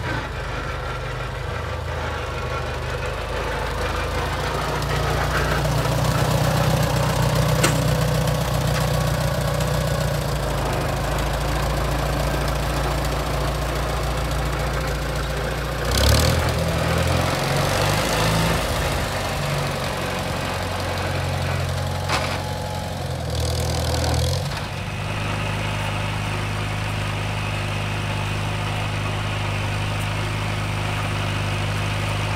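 Small International Cub tractor's four-cylinder gasoline engine running steadily as the tractor drives along. Its note shifts abruptly about halfway through and again at about 24 seconds, then holds steady.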